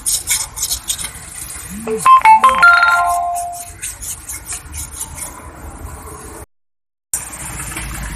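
Quick, repeated scraping strokes of hand-polishing the rust off the water pump's seat in the engine block. About two seconds in, a short electronic chime of several ringing notes, like a phone ringtone, is the loudest thing heard.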